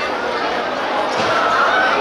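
A football being kicked and bouncing on a hard court surface, with players and spectators shouting over it.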